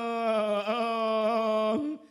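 A singer's voice holding one long, drawn-out vowel of chanted Thai khon verse, slightly wavering, breaking off near the end.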